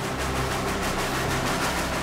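Steam locomotive running past at speed: a steady rushing noise over a low rumble.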